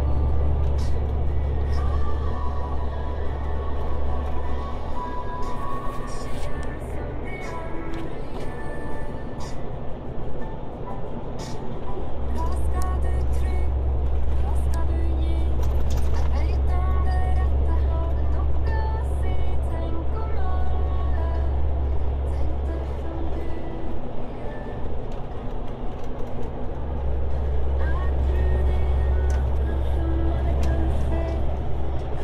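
Inside a moving vehicle: a steady low engine and road drone that eases off twice for a few seconds, with music and a voice playing in the cabin over it.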